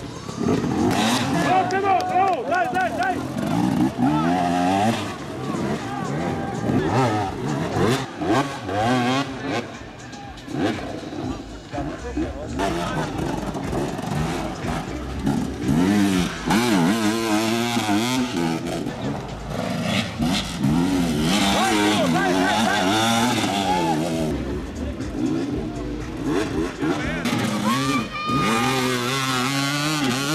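Enduro motorcycle engines revving hard, their pitch rising and falling again and again as the bikes climb steep, muddy slopes, with people's voices mixed in.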